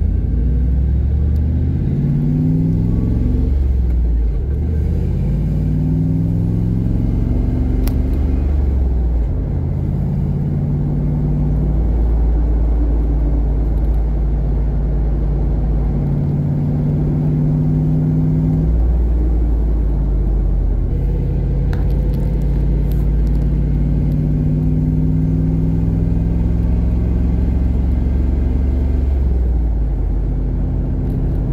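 5.3-litre iron-block LS V8 swapped into a Ford Mustang, driving away through the gears of its manual gearbox: the engine note rises, falls at a shift about four seconds in, rises again, then holds a fairly steady cruise. Heard from the cabin with the engine bay open.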